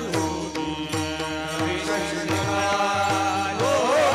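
Live Indian devotional music: held melodic notes over a steady drone, with a regular beat of low drum strokes that slide down in pitch. A man's voice comes back near the end with a wavering, ornamented sung phrase.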